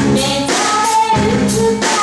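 Live rock band playing: a woman singing lead over electric guitar, bass guitar and a drum kit with cymbals, loud and continuous.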